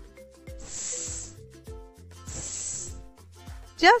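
A voice making the letter S sound, a drawn-out "sss" hiss, twice, each lasting under a second. Background children's music with a steady beat plays underneath.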